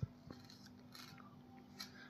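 A few faint, light metallic clicks of a steel ladle being handled at an aluminium cooking pot, the clearest near the end, over a faint steady low hum.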